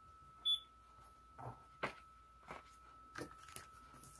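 A single short, high electronic beep about half a second in, then soft paper rustles and light taps as a paper cut-out is lifted and handled on a canvas. A faint steady high whine runs underneath.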